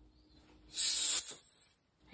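A woman sighing: one long hissing breath out lasting about a second, starting near the middle.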